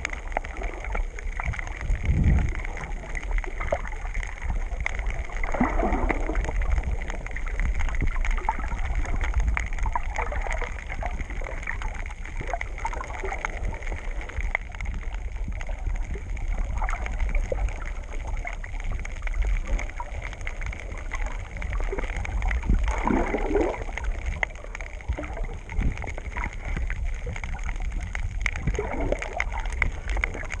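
Underwater sound picked up by a snorkeler's camera: muffled water sloshing over a steady low rumble, with a louder swell every five or six seconds.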